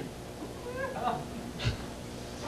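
A faint voice in a comedy club making a short sound whose pitch slides up and down, followed by a brief knock near the end.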